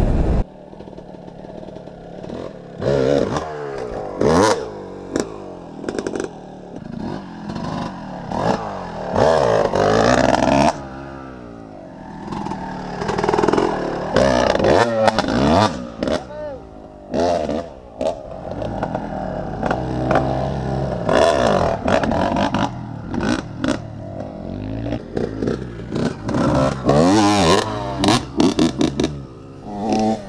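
Several enduro dirt-bike engines revving and riding past, their pitch climbing and falling as the throttles open and close. The bikes overlap, and the sound surges louder several times as one comes close.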